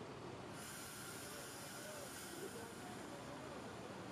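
Faint bus-terminal rumble of diesel coaches pulling off, with distant voices, and a steady high hiss that sets in about half a second in.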